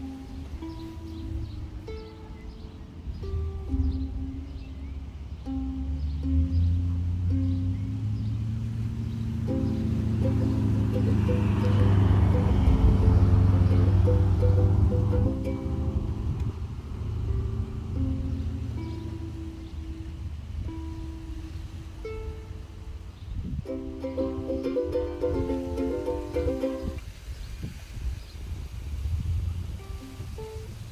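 Ukulele being tuned: single strings plucked one at a time, then a few strummed chords about 24 seconds in, still not in tune. A low rumble swells and dies away midway through.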